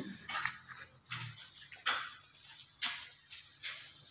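Rubber mallet tapping a freshly laid ceramic floor tile to bed it level in the mortar: about five light taps, roughly one a second.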